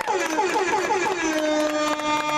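A spectator's long, loud cheering cry: the pitch wavers and falls at first, then holds on one steady note.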